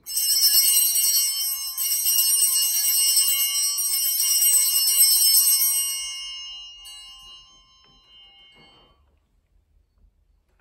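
Altar bells rung at the elevation of the consecrated host: a jangle of high ringing tones that starts sharply, gets a second shake about two seconds in, and keeps ringing for about six seconds before dying away.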